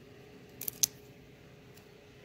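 Trading cards handled in the hand, their stiff card stock giving a few short, crisp clicks a little over half a second in, over a faint steady hum.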